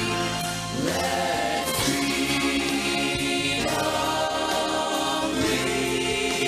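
Mixed vocal ensemble singing in harmony into handheld microphones, holding chords that change every second or two.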